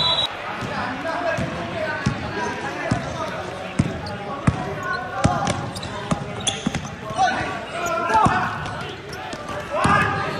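Basketball being dribbled on an indoor sports-hall court: sharp, echoing bounces roughly once a second, under players' voices.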